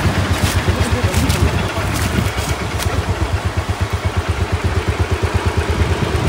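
Motorcycle engine running at low revs, a steady low rumble that pulses evenly several times a second. A few faint clicks come in the first few seconds.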